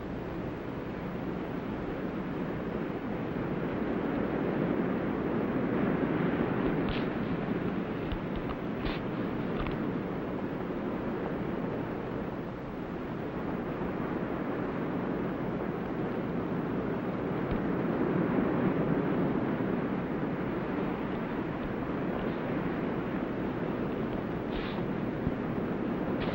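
Steady rushing sound of surf washing on a shore, swelling and easing twice, with a few faint ticks about seven and nine seconds in.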